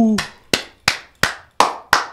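One person clapping: five sharp, evenly paced claps, about three a second.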